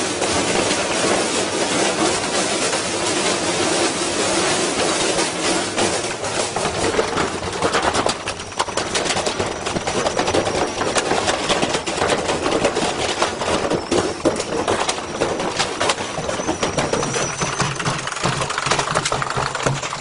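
Front-loading washing machine on a high-speed spin with a heavy unbalanced load, shaking itself to pieces: a continuous loud clatter of banging and rattling, with many sharp knocks as the drum smashes against the broken frame and casing.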